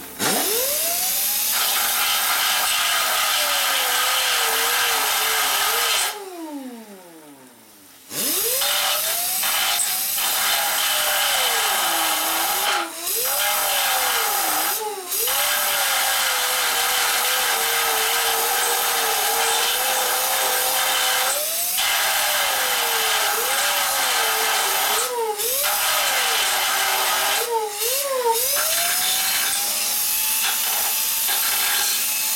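Electric angle grinder cutting steel, its whine sagging and wavering as the disc bites. About six seconds in the trigger is let off and the motor coasts down, then it spins back up about two seconds later; several brief let-offs follow.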